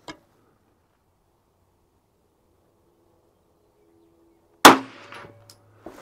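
A single shot from an HK VP9 9mm pistol firing a 70-grain Underwood Hero round, a very fast, light load, about four and a half seconds in. The shot is sharp and loud, with a short ringing tail.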